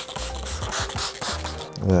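Background music, with hisses from a trigger spray bottle misting soapy slip solution onto paint protection film.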